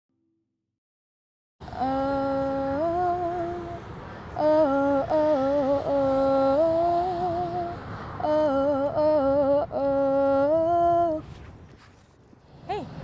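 A woman humming a slow wordless melody in held notes that step up and down, in several short phrases. It starts after about a second and a half of silence and stops about a second before the end.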